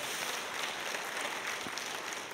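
Congregation applauding, a soft steady patter that starts to die away near the end.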